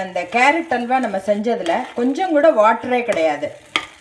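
A spoon stirring thick carrot halwa with ghee in a metal pan, with a light frying sizzle under someone talking. There is one sharp click a little before the end.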